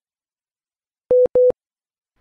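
Two short, loud electronic beeps at the same steady mid pitch, one right after the other, starting about a second in out of silence.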